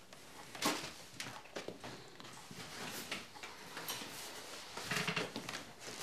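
Scattered light knocks, clicks and rustles of objects being handled and people moving, with one sharper knock a little under a second in.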